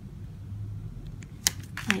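Faint handling of a paper sticker as fingers press it flat onto an album page, with a single sharp click about a second and a half in.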